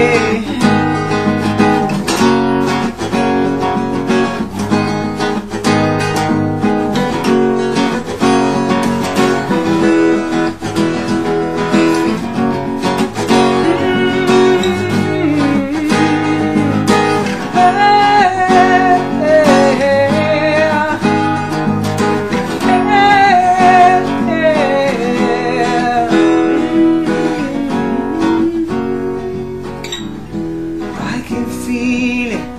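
Acoustic guitar strummed steadily, chords played in a regular rhythm through an instrumental passage of a song.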